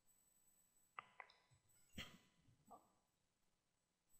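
Near silence: faint room tone with four short, faint clicks, the loudest about two seconds in.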